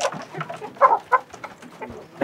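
Hens clucking, with a few short calls close together about a second in.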